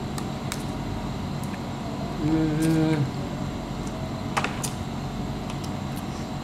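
Crab being eaten by hand: a handful of sharp, scattered clicks as the shell is picked apart and chewed, with a short hummed "mmm" about two seconds in, over a steady background hum.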